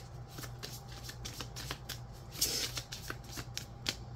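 A tarot deck being shuffled by hand: a quick run of papery card clicks and slaps, several a second, with a longer rustle a little past halfway through.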